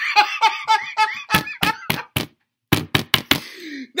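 A man laughing hard for about the first second, then a string of sharp knocks or slaps, a brief silence, a few more knocks and a breath near the end.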